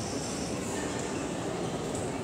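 Steady background noise of a large sports hall: a low, even murmur of spectators and room noise.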